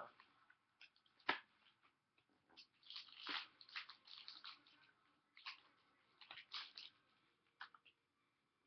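Trading cards handled on a table: faint scattered rustles and clicks as a stack of cards is flipped through and sorted, with one sharper click about a second in.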